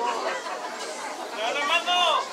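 Speech only: people's voices in overlapping chatter, with one voice coming through more clearly near the end.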